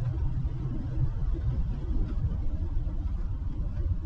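Low, steady rumble of a truck driving along a road: engine and road noise.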